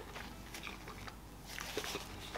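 A person chewing and biting fried chicken: faint, scattered mouth clicks, with a short cluster of them near the end.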